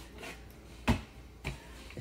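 A sharp knock about a second in and a softer knock half a second later, as the scooter's metal suspension seat post and seat tube are handled and set down on the bench.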